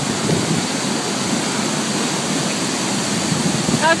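Large waterfall in rainy-season flood: a steady, loud rush of falling water, mixed with heavy rain.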